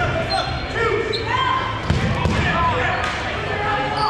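Sneakers squeaking on a hardwood gym floor as dodgeball players sprint off the line in the opening rush, with voices in the hall and a sharp knock just before two seconds in.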